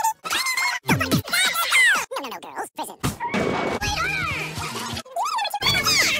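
Rapidly cut montage of cartoon soundtrack snippets: music and short bits of cartoon voices, broken by several abrupt cuts, with a noisy burst about three seconds in.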